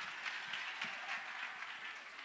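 Congregation applauding after an a cappella song, a dense patter of many hands clapping that slowly fades.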